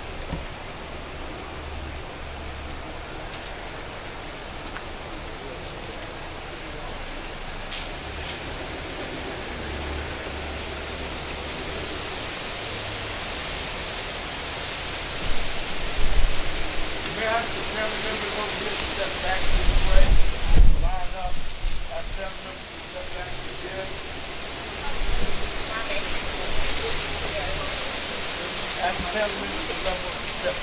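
Steady outdoor hiss with a low rumble that swells in the middle. Distant voices talk faintly in the second half.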